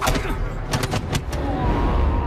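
Fight sound effects from a martial-arts film: a quick run of punch impacts, the first one the strongest, over a low rumble, ending after about a second and a half. A thin held tone follows near the end.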